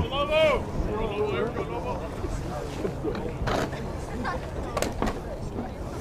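Scattered shouts and chatter from baseball players and spectators, with two sharp knocks, one about three and a half seconds in and one near five seconds.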